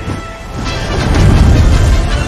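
Loud, deep rumbling rush that swells to its peak about a second and a half in, over a film score.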